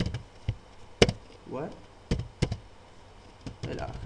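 Computer keyboard keystrokes: a handful of sharp, irregularly spaced key clicks as a short phrase is typed, the loudest about a second in.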